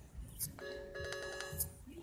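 Phone notification sound: a faint electronic chime of several steady tones pulsing rapidly, lasting about a second.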